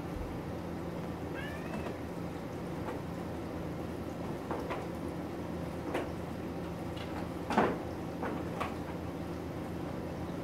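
A cat meows once, briefly, about a second and a half in. After it come scattered light knocks and clatters, the loudest about three-quarters of the way through, over a steady low hum.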